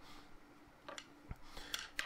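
A few faint, light clicks of small screws and hardware being handled and set into the countersunk holes of the sled's tabletop, over quiet room tone.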